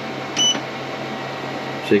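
A single short electronic beep from an EG4 solar inverter's control panel as one of its buttons is pressed, about half a second in, over a steady low hum.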